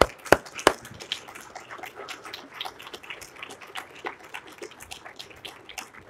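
Hand clapping: three loud claps close to the microphone in the first second, followed by lighter, scattered applause from a congregation.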